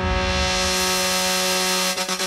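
Electronic dance music at a breakdown: one sustained buzzy synthesizer note held steady, growing brighter over the first second as its filter opens, while the thumping bass of the beat fades out.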